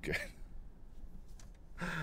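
A man sighs near the end, over the low steady rumble of a moving car's cabin.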